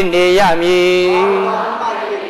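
A Buddhist monk's voice chanting in long held notes: a short note, then a longer one held for about a second, trailing off near the end.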